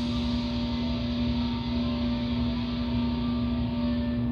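A steady, unchanging hum: one sustained low tone with fainter tones above it over a low rumble.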